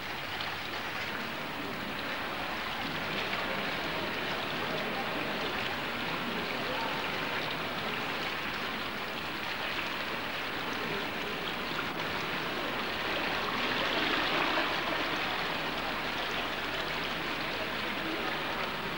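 Steady rush of running water in a cave, growing a little louder about fourteen seconds in.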